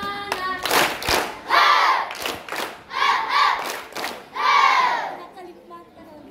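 A modern gamelan-style music track cuts off, followed by scattered hand claps and three loud shouts or cheers from voices in a crowd.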